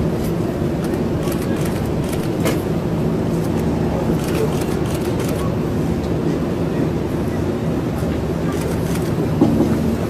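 Steady engine noise: a continuous rumble with a low, even hum and scattered faint ticks, as of machinery running while cargo is unloaded from a parked military transport jet.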